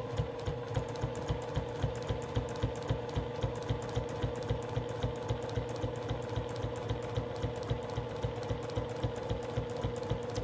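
Domestic sewing machine running at a steady speed, stitching binding through the layers of a quilted table runner: an even, rapid tick of the needle over a steady motor hum.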